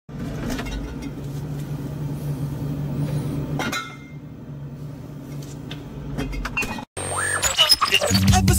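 Refrigerator humming while cans and bottles on its shelves clink as a hand reaches in and takes one. About seven seconds in, the sound cuts out and intro music starts with a rising sweep.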